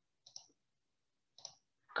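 A couple of faint, short clicks: one about a quarter second in and another about a second and a half in, with quiet between.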